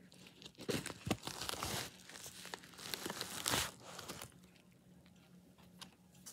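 A plastic bubble mailer being torn open and crinkled by hand: a run of irregular rustling and tearing noises for about four seconds, the loudest a little past three and a half seconds.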